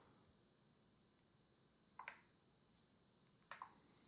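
Near silence, with a faint steady high tone and two faint short clicks from a Leagoo M5 smartphone being handled. The first click comes about two seconds in and the second about a second and a half later.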